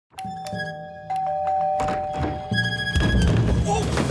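A two-tone doorbell chime, a higher note then a lower one, rung twice in quick succession. Music plays under it and grows louder from about halfway.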